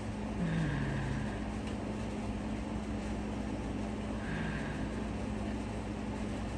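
Quiet room tone: a steady low hum, with two faint, brief sounds, one about half a second in and one about four seconds in, while a person smells a perfumed cotton pad held to the nose.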